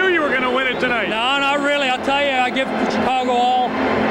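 Speech only: a man talking into an interview microphone.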